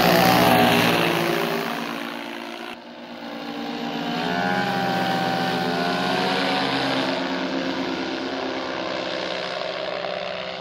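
Paramotor engine and propeller flying past overhead. It is loud at first and fades, then swells again to a steady drone and eases off, its pitch drifting as it passes.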